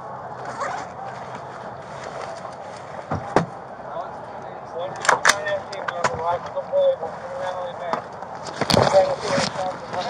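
Several sharp knocks and scrapes from a body-worn camera brushing against a patrol car and a uniform, the loudest about 5 and 9 seconds in, over indistinct voices.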